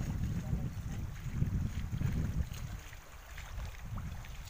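Wind buffeting the microphone: an uneven low rumble that eases off about three seconds in.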